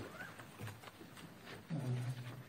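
A pause in a man's speech: low room noise with faint scattered clicks. The man resumes near the end with a short hesitant 'uh'.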